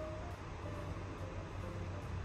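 A low steady hum, with a few faint brief tones above it.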